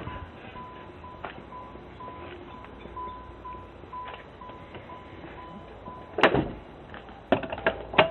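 A 1988 Pontiac Fiero's warning chime sounding with the driver's door open, a faint single-pitched beep repeating about two to three times a second that fades after about five seconds. A sharp thump comes about six seconds in, with a few clicks near the end.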